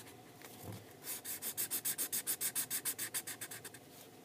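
Sharpie permanent marker colouring in a solid area on sketchbook paper, rubbed rapidly back and forth: a fast, even run of strokes, about nine a second, starting about a second in and stopping just before the end.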